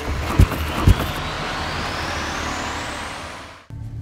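Two sharp thumps of blows landing, about half a second apart, in a staged fight. They are followed by a rising whoosh that fades and cuts off near the end.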